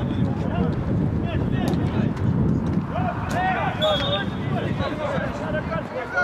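Footballers shouting to each other during play, mostly from about halfway through, over a steady low rumble of outdoor noise, with a few sharp knocks.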